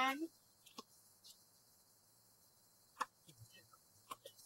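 A single sharp knock of a tennis ball, about three seconds in, followed by a few faint ticks. Before it the court is mostly quiet, apart from the tail of a voice at the very start and a faint tick about a second in.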